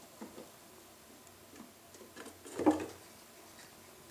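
Chinchilla moving about on a wooden branch and floor: scattered light ticks and taps of paws and claws, with one louder thump about two and a half seconds in.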